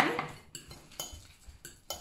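Metal spoon clinking and scraping against a ceramic bowl while stirring a thick, mushy mixture: a few light, separate clinks.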